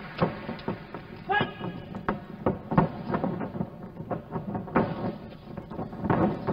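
Live arena sound of a mixed-martial-arts bout: voices and shouts, with a run of short sharp smacks and knocks from the ring.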